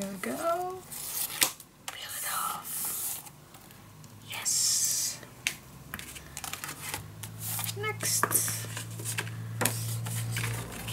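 Cardstock being handled on a tabletop: sheets and strips sliding, rubbing and being pressed down, with irregular rustles, a longer scraping hiss about halfway through, and a run of small taps and clicks near the end.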